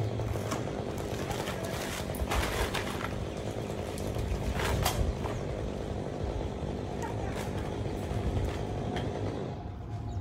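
Steady, rough motor noise from the crew's tree-cutting power equipment running, with a few short sharp knocks about two, five and seven seconds in.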